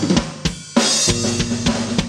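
Live band starting a song: drum hits, a short break about half a second in, then the full band comes in with a cymbal crash and a steady beat on the drum kit under sustained bass and keyboard notes.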